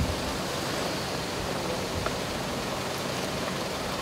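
Steady outdoor noise, an even hiss without distinct events.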